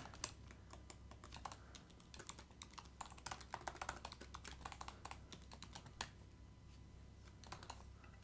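Typing on a computer keyboard: quiet, quick, irregular keystrokes in short runs, which thin out after about six seconds, with one sharper tap there.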